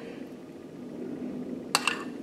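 A metal spoon clinks twice in quick succession against the cookware near the end, the strikes ringing briefly, over a faint steady hum.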